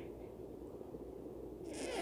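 Faint room tone with a low steady hiss, then a quick inhale near the end as the speaker draws breath to go on talking.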